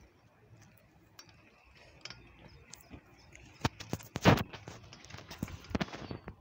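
Irregular clicks and knocks from a handheld phone being moved and handled, with a louder thump about four seconds in.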